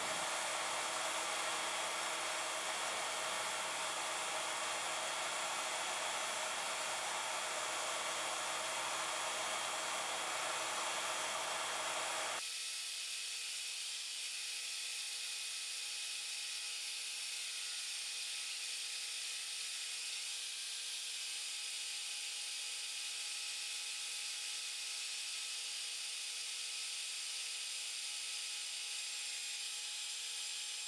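DoAll toolpost grinder's freshly dressed wheel grinding a turning steel bushing on a lathe: a steady grinding hiss over the grinder's running motor. About twelve seconds in, the deeper part of the sound drops away abruptly, leaving a thinner, steady hiss.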